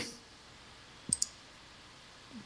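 Two quick, sharp clicks about a second in, over faint room tone.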